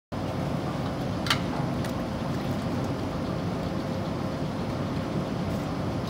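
Steady low rumble of factory machinery running on a ceramics glazing line, with one sharp click about a second in.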